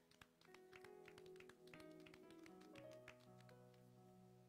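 Faint instrumental church music, held keyboard chords that change every second or so, with a quick run of light taps through the first couple of seconds.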